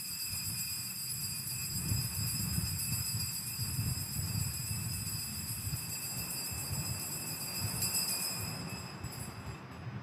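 Altar bells ringing steadily as the consecrated host is elevated at Mass, the ringing fading out about nine seconds in, over a low rumble.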